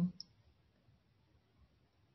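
A single short click just after the start, then near silence with faint room tone.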